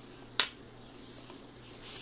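A single sharp click about half a second in, then faint rustling of a paper book page being turned near the end, over a low steady hum.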